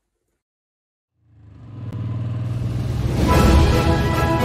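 Silence for about a second, then a motorcycle engine rumble fades in and grows louder. Music comes in over it near the end.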